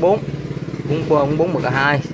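A man talking in Vietnamese, with a brief pause near the start, over a steady low background hum.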